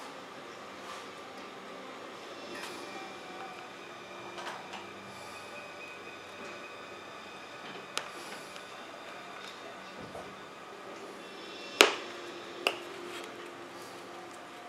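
Small hand work on styrene plastic mold parts with a hobby knife: faint handling and scraping, then a sharp click near the end, followed by a smaller click under a second later.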